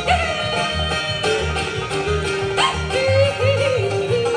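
Live bluegrass band playing, with banjo, fiddle, guitar and upright bass under a woman's lead vocal that leaps in pitch in yodel-style breaks during the second half.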